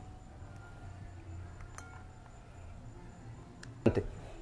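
Quiet kitchen handling as peeled shrimp are moved from a plastic cutting board into a bowl of batter: faint low background with a couple of faint light clicks, about halfway through and near the end.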